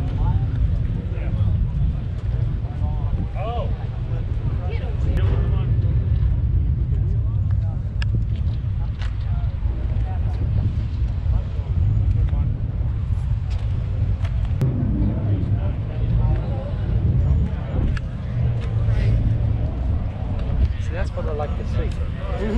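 Outdoor ambience: a steady low rumble with faint voices of people talking in the background now and then.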